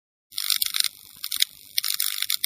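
Edited intro sound effect: a run of irregular, hissy crackles starting about a third of a second in.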